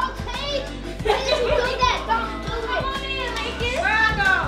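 Excited voices, a child's among them, calling out over background music with a steady beat.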